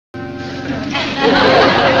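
Dialogue from a 1960s TV show soundtrack over background music: held music notes at first, then a voice comes in about a second in.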